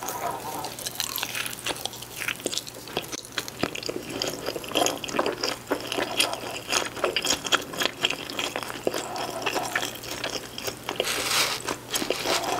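Close-miked chewing of pepperoni cheese pizza: wet mouth sounds with many small clicks and crackles throughout.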